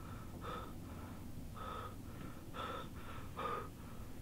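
A man breathing hard in a series of heavy, gasping breaths, in and out roughly every half second.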